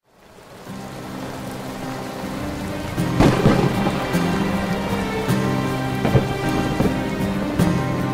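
Rain and thunder, fading in from silence, with a roll of thunder about three seconds in. Soft instrumental music with long held notes plays underneath.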